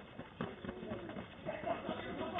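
Indistinct, muffled voices of people talking outside, heard through a doorbell camera's microphone, with a couple of short knocks near the start.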